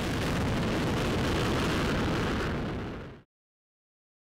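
A Delta II rocket's engines heard from the ground during liftoff and ascent, a steady rushing noise with a deep low end. It fades a little and cuts off abruptly about three seconds in.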